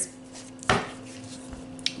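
A tarot deck being handled and a card drawn: one sharp tap about two-thirds of a second in and a fainter click near the end.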